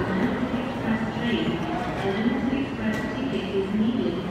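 Kintetsu 22000 series ACE limited express train rolling slowly into the platform, with a voice talking over it.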